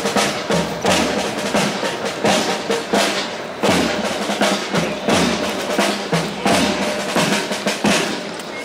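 Military parade drums, snare and bass drum, beating a steady marching rhythm with snare rolls and a deep bass-drum stroke about every second.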